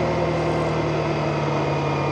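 Motorcycle engine running at a steady speed while riding, with road and wind noise; the pitch stays level throughout.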